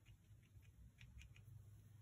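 Near silence, with a few faint, irregular soft ticks from a paintbrush dabbing watercolour dots onto wet paper.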